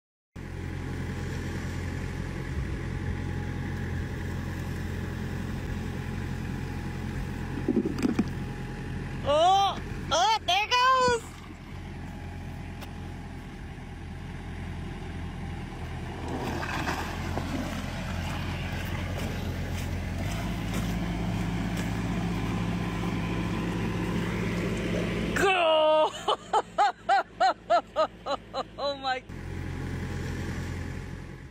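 A vehicle engine running steadily at a low pitch; its note shifts about twenty seconds in and it drops out near the end. A voice is heard briefly about ten seconds in and again near the end.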